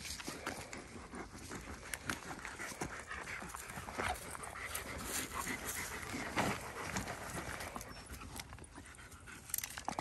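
Dogs panting close by, with rustling and small clicks as a backpack is handled.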